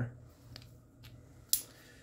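Handling of a spring-loaded self-adjusting wrench: a couple of faint clicks, then a single sharp metallic click about one and a half seconds in as the jaw and bolt shift.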